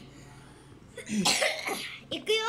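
A person coughs once, briefly, about a second in, after a quiet moment.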